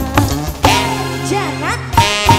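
Live band music: drum strokes and a steady bass under a melody line that wavers and glides upward in pitch.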